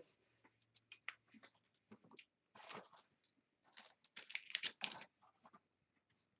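Faint light clicks and rustling of hands handling a trading card and a plastic one-touch card holder. The handling comes in two denser flurries, one before the middle and one after it.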